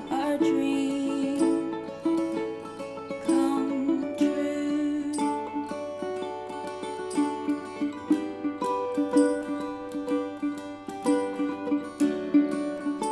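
Instrumental passage of a folk acoustic arrangement: a ukulele and a steel-string acoustic guitar played with a pick, with a plucked melody over strummed chords and no singing.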